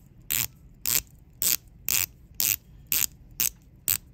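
The 120-click rotating diving bezel of an Omega Seamaster Diver 300M GMT Chronograph being turned in short steps. It gives eight short bursts of ratcheting clicks, about two a second.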